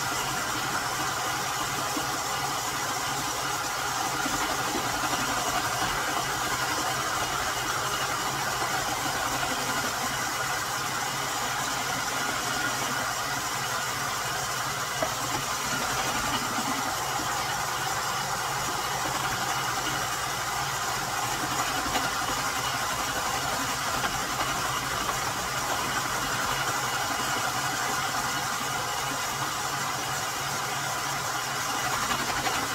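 Steady mechanical hum of a running machine, with a couple of faint clicks partway through.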